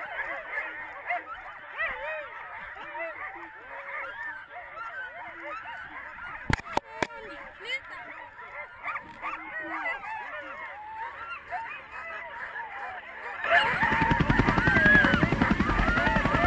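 A large gathering of harnessed sled dogs yelping and howling in many overlapping, wavering voices, eager to run before the start. A couple of sharp knocks come about halfway through, and near the end a much louder low rumbling noise comes in under the dogs.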